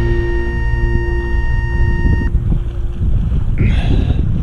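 The last held chord of background music dies away about two-thirds through, over a steady low rumble of wind and lapping water on a camera microphone held at the surface of a lake. A short hiss comes near the end.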